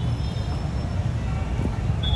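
Busy outdoor street ambience: a steady low rumble of traffic and vehicles, with faint thin high tones coming and going above it.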